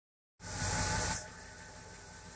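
1965 Pontiac GTO's V8 idling: a low, steady rumble. A loud hiss starts about half a second in and lasts under a second.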